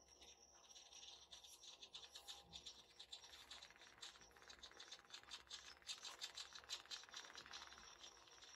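Faint, rapid ticking with a light whirr from a small hobby servo stepping through its sweep as it turns the waterproof ultrasonic sensor of an Arduino radar.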